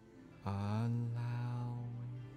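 A deep voice chants one long, low, steady note, starting suddenly about half a second in and holding past the end, over soft ambient meditation music.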